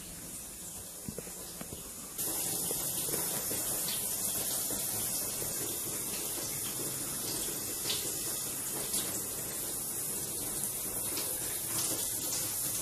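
Steady hiss of water spraying from a leak inside the house, suspected to come from a burst pipe; it turns suddenly louder about two seconds in.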